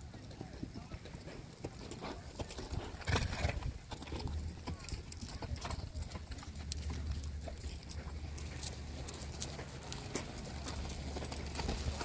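Horses' hoofbeats on the dirt footing of a show arena as horses move at a slow gait along the rail, with scattered knocks and a louder cluster about three seconds in. Faint voices sound in the background.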